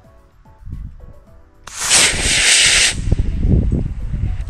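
Model rocket motor igniting on the launch pad: a sudden loud hissing whoosh about a second and a half in, lasting just over a second, then dropping to a softer hiss as the rocket climbs away.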